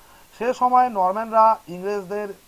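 Only speech: a narrator's voice talking in Bengali.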